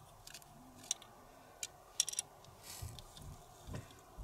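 Quiet handling sounds: a few light clicks, three of them in quick succession about halfway through, and a soft rustle as hands work cotton crochet thread over a plastic tassel maker.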